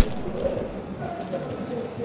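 A pause in a large hall: low background hum with a faint murmur of distant voices.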